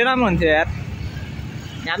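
A voice speaks for about half a second, then a steady low rumble of background noise fills the rest of the time until speech starts again at the end.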